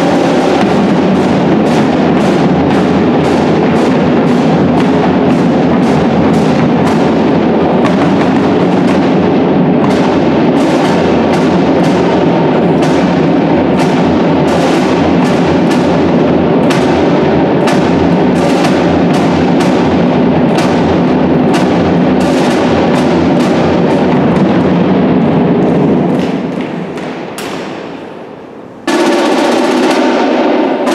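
Marching band of brass and drums playing, with sousaphone, trumpets and saxophone over a steady beat of snare and bass drums. The music fades down near the end, then cuts back in suddenly at full level.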